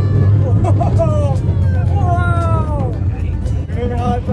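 A small family roller coaster running with a steady low rumble, while riders give high, excited cries that fall in pitch, several times over the few seconds.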